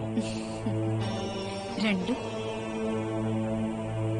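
Background music of a devotional, mantra-like kind, held on a steady low drone, with a brief sliding vocal or melodic note about two seconds in.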